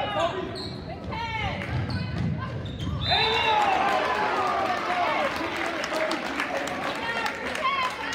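A basketball being dribbled on a hardwood gym floor, low thumps, for the first few seconds. About three seconds in, many spectators' voices rise into loud shouting that carries on over the play.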